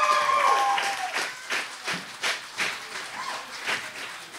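Small audience applauding and cheering at the end of a performance: a held cheering voice fades out in the first second, then scattered clapping dies down toward the end.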